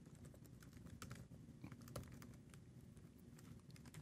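Faint typing on a computer keyboard: a quick, irregular run of soft key clicks.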